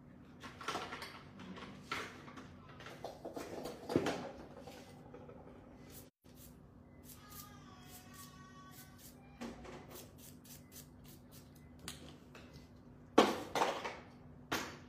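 Light clicks, taps and knocks of small manicure tools and bottles being handled, with a sharper knock about a second before the end, over a steady low hum.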